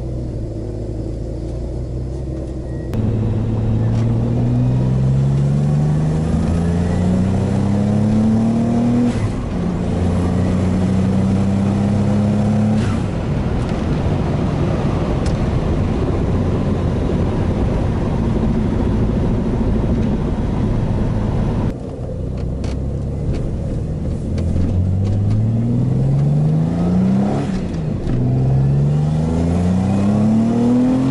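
Turbocharged Subaru EG33 flat-six engine heard from inside the car's cabin, idling at first, then revving up through the gears in long rising sweeps that drop back at each shift. After a steady stretch of engine and road noise, several quicker rising sweeps come near the end. The engine pulls cleanly to about 5,500 rpm without bogging under boost.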